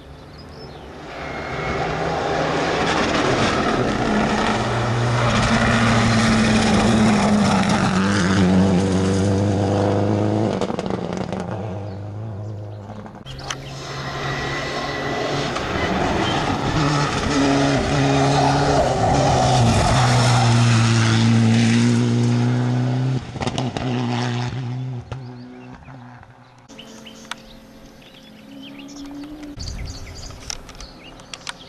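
Rally cars driven flat out on a tarmac special stage, the engine note climbing and dropping again and again through gear changes and corners as each car approaches, passes and pulls away. Two separate passes of about ten seconds each, with an abrupt break between them near the middle. The sound fades after the second pass.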